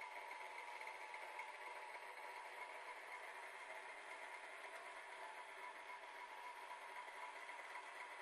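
A stand mixer's electric motor running steadily with a dough hook kneading beignet dough, giving a quiet, even whine.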